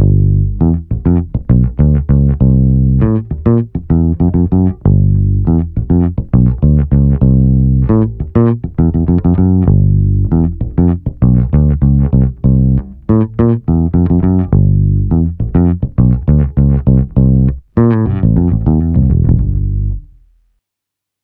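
1965 Fender Precision Bass played fingerstyle and recorded direct through a DI: a steady line of plucked bass notes. Its original 1965 bridge base plate carries late-1960s threaded saddles.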